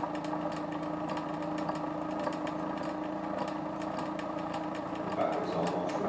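Bedini SSG monopole energiser running: the magnet wheel spinning past the pulsed coil gives a steady hum with a faint, rapid, even ticking as the coil fires. The wheel is gaining speed very slowly.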